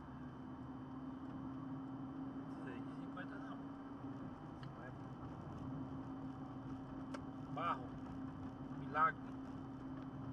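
Inside a car cabin at road speed: a steady engine drone and tyre and road noise, with the drone easing off for about a second midway. Two short bursts of a man's voice come near the end, the second the loudest sound.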